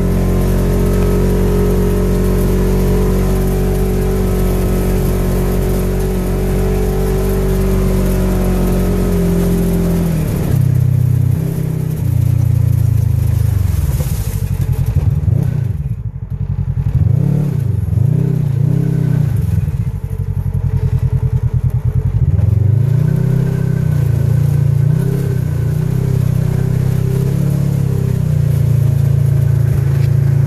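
Side-by-side UTV engine heard from the cab, running at a steady speed for about ten seconds, then revving up and down again and again as it drives through mud.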